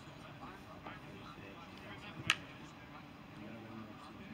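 Faint outdoor background with distant voices, broken once about two seconds in by a single short, sharp knock.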